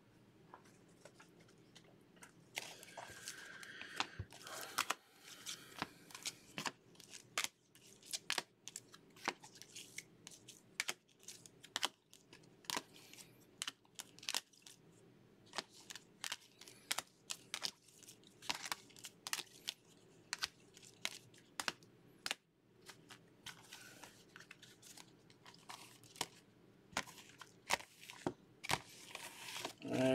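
Rigid plastic card holders (top-loaders) and card sleeves being handled and stacked: an irregular run of light plastic clicks, clacks and crinkles. The clicks begin a couple of seconds in.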